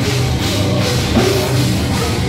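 A hardcore band playing live at full volume: distorted electric guitars, bass and a drum kit.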